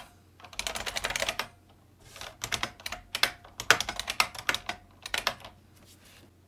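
Typing on a computer keyboard: a fast run of keystrokes in the first second and a half, then separate key presses spread over the next few seconds.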